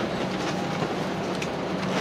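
Steady airliner cabin ambience on the ground: the Airbus A320's air-conditioning hiss with a faint low hum, and a light click or two.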